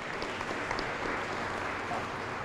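Audience applauding steadily, with the clapping of many hands.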